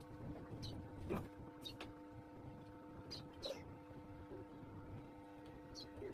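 Faint steady hum, with short, high chirps every second or two and a single click about a second in.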